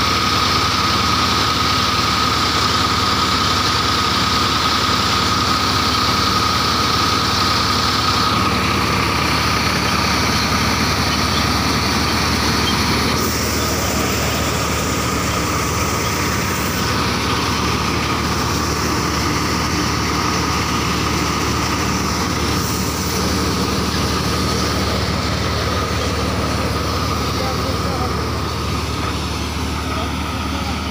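Tractor-driven multicrop thresher running steadily under load while threshing mustard: a continuous mechanical drone with the tractor engine beneath it and a steady high whine that fades out about eight seconds in.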